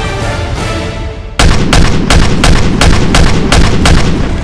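Gunfire sound effect: a rapid series of about eight loud shots, roughly three a second, starting suddenly about a second and a half in, over background music.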